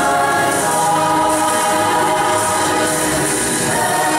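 Youth choir singing in harmony, holding long sustained chords.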